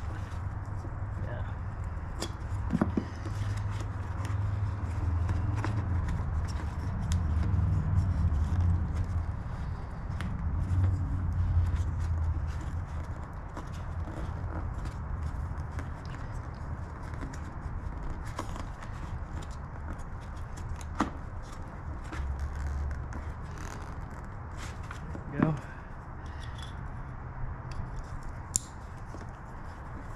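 Hands working plastic electrical connectors and wiring on a motorcycle, with scattered small clicks and rustles over a low rumble that swells a few seconds in.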